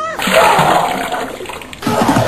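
Projectile vomiting: a loud, wet gushing splash lasting about a second and a half, with a second gush starting just before the end.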